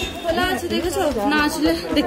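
People talking: voices chattering, with no clear words.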